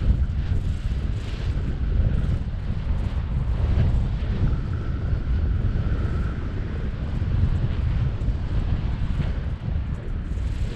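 Wind rushing over the microphone of a camera carried by a tandem paraglider in flight, a loud, steady, gusting low rumble.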